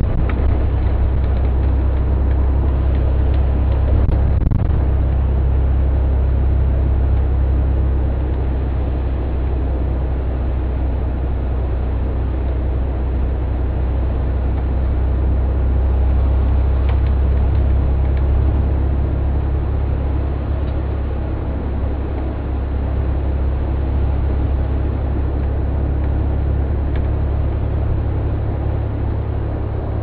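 Charter motor coach driving on a city road, heard from the driver's seat: a steady, loud, low engine and road rumble.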